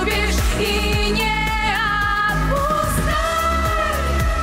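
A woman singing a song into a microphone over a musical accompaniment with a steady bass beat. She holds notes with vibrato.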